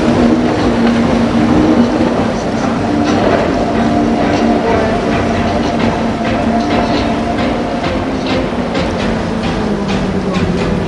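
Four Mercury 600 V12 outboard engines on a Yellowfin center-console running hard at speed, a steady drone of several tones over the rush of spray and water off the hull.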